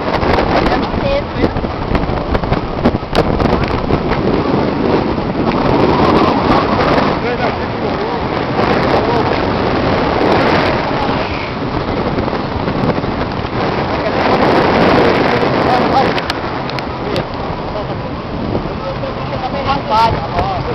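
Heavy wind noise on the microphone over the steady rush of breaking surf, with indistinct voices in the background.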